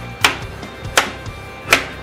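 Three sharp hammer strikes, about three-quarters of a second apart, as a small hammer breaks up a pack of frozen brine shrimp, over steady background music.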